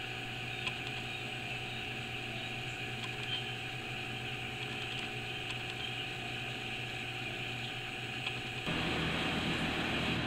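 Steady machine hum and hiss, like a fan or air-conditioning unit running, with a few fixed tones in it. It gets a little louder near the end.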